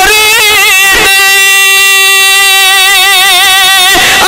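A man singing a devotional elegy into a microphone over a loudspeaker: a short wavering phrase, then one long held note from about a second in.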